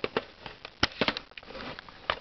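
Hard plastic parts clicking and knocking as a Nerf Recon laser sight is fitted onto the top rail of a Nerf Barricade RV-10 blaster. A string of short sharp clicks, the loudest a little under a second in.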